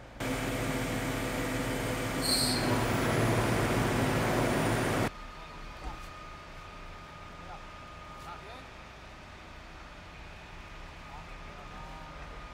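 A vehicle engine running close by, loud and steady, cutting off abruptly about five seconds in. Quieter street background follows, with a faint steady whine.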